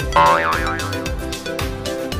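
Background music with a steady, even beat and held notes; a wavering high tone rises and falls a little after the start.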